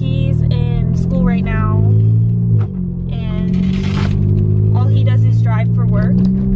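Low steady drone of a big-turbo Volkswagen Golf GTI Mk7's turbocharged four-cylinder while driving, heard inside the cabin, dipping briefly in pitch and level about two and a half seconds in. A voice comes and goes over it.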